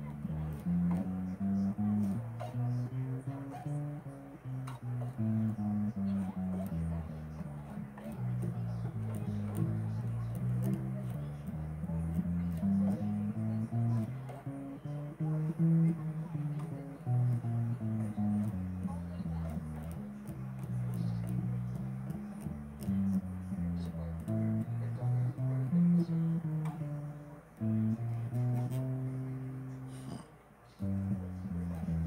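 Bass guitar played solo: a line of plucked low notes that climbs and falls in runs, with a short break near the end.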